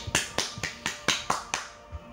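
A quick, even run of sharp percussive hits, about four a second, fading away near the end.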